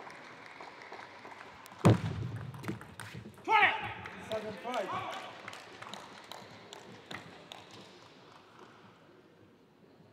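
Table tennis hall sounds: a fading murmur, then one loud, sharp knock about two seconds in, followed by a loud shouted call of a few syllables with bending pitch, then a few faint ticks as the hall grows quiet.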